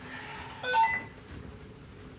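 A short cluster of electronic beeps, several steady tones at once, loudest a bit under a second in, followed by low room noise.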